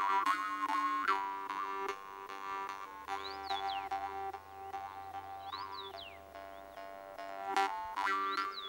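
Kyrgyz temir komuz, a metal jaw harp, played solo: a steady twanging drone whose overtone melody shifts as the player reshapes his mouth, re-plucked about once a second, with whistle-like overtones rising and falling above it.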